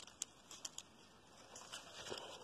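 Fingers handling the leaves of a young maize plant as they pry open its whorl: a few faint rustles and small clicks.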